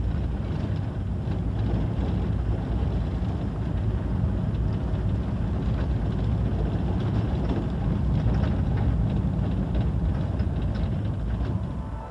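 Motor vehicle driving steadily along a road, a continuous low rumble of engine and road noise.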